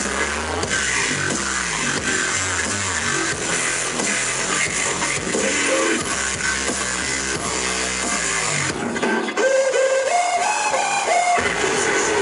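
Loud live dubstep through a concert PA, heard from the crowd: dense pulsing bass lines until about nine seconds in, when the bass drops away and a higher synth line steps up in pitch, then the bass comes back in near the end.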